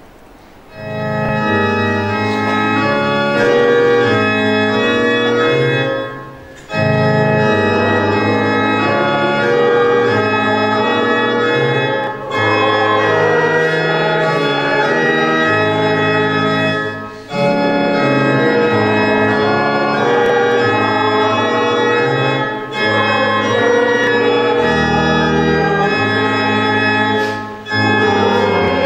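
Church organ playing a hymn tune in held chords, starting about a second in, with short breaks between phrases about every five seconds.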